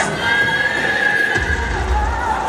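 Recorded horse whinny played over a stage sound system, with music behind it; a low rumble comes in about one and a half seconds in.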